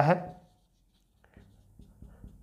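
Marker pen writing on a whiteboard: faint, irregular scratching strokes that begin a little past halfway.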